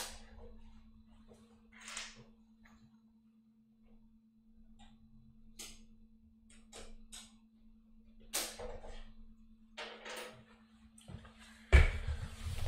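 Hot-swap drive trays being unlatched and slid out of a QNAP TS-h886 NAS's drive bays, pulling two disks from a running RAID 6 array: a string of short clicks and sliding scrapes about every second or two, over a steady low hum.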